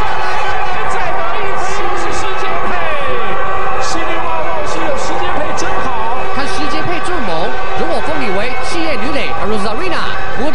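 Mandarin TV sports play-by-play commentary over a steady bed of ballpark crowd noise, with a few sharp knocks scattered through. The commentary grows more animated in the second half.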